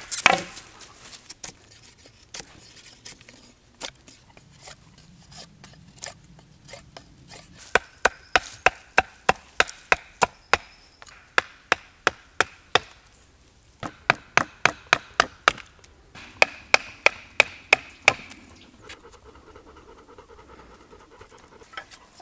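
A knife being batoned through a green hazelnut stick on a stump: sharp knocks on the blade, scattered at first, then two fast runs of about three a second with a short pause between.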